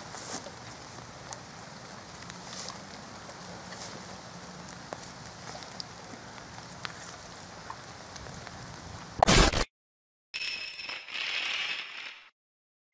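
Rustling and crackling of hands clearing loose soil and leaf litter from a blocked badger sett entrance, over a steady rain-like hiss. About nine seconds in comes a short loud burst of noise, then a moment of silence and a glitchy electronic sound effect with a high tone.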